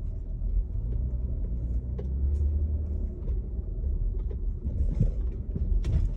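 A car's engine and tyre noise heard from inside the cabin as it drives slowly: a steady low rumble, with a few faint clicks.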